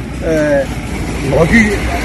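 A man speaking in short phrases over a steady low rumble in the background.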